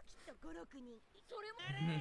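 Anime dialogue in Japanese: a cartoon man's voice talking fairly quietly, then rising into a loud, excited, drawn-out shout near the end.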